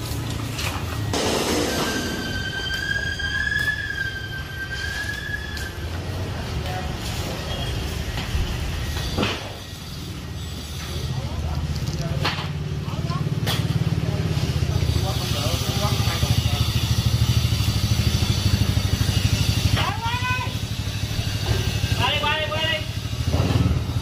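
A small engine running steadily at low speed, growing louder about halfway through.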